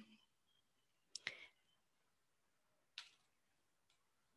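Near silence, with a few faint short clicks: two close together about a second in, and one more about three seconds in.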